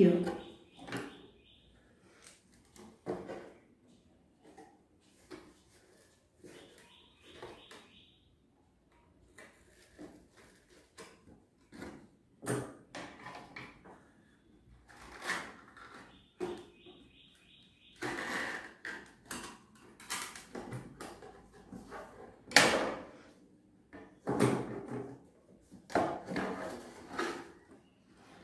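Cardboard shoebox being worked by hand: irregular knocks, taps and rustles as holes are made in its top and twine is threaded through and tied.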